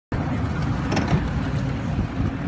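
Steady low rumble of an idling rescue-boat outboard engine mixed with wind on the microphone at sea, with a brief knock about a second in.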